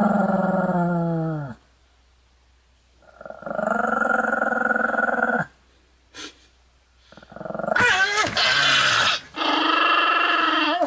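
A small dog growling in long, drawn-out growls, four of them with short pauses between; the first slides down in pitch.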